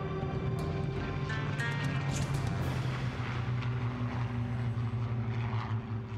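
Propeller aircraft engine running steadily at high power, with a rush of noise in the middle, under background music.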